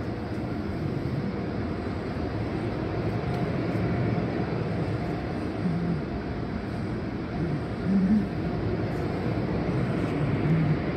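Automatic car wash machinery running: water spraying and rotating brushes scrubbing a car, a steady rushing noise, briefly louder about eight seconds in.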